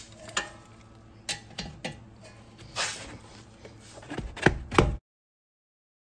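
Metal tools clinking and knocking irregularly against a car's rear brake caliper bracket as a wrench is set on its bolts, with a short scrape about three seconds in and two louder knocks just before the sound cuts off abruptly.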